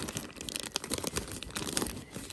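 Crinkling and rustling of plastic packaging and bag contents as a hand rummages inside a diaper bag, trying to push a packet of wipes back in: a continuous run of small crackles.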